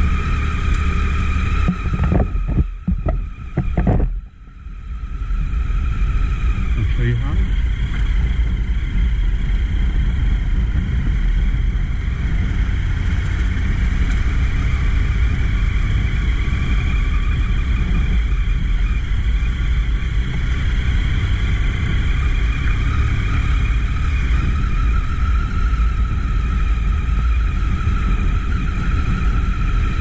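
Triumph adventure motorcycle's engine running steadily at low road speed, with wind rush on the microphone. The sound briefly dips and breaks up about two to four seconds in, then holds steady.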